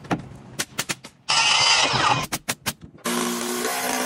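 Framing-work tool sounds in quick succession: a run of sharp knocks in the first second, a loud hissing burst, a few more quick knocks, then a cordless driver's motor running for the last second.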